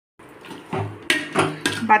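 Slotted spatula stirring thick mushroom gravy in an aluminium pot, knocking and scraping against the pot's side, with a few sharp clinks about a second in.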